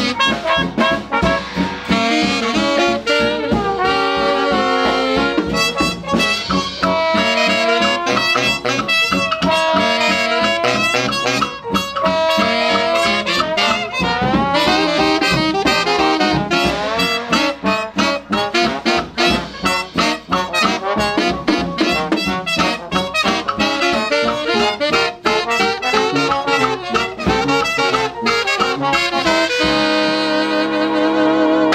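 Live hot jazz band of trumpet, trombone, saxophones, piano, banjo, brass bass and drums playing a stomp together over a steady beat.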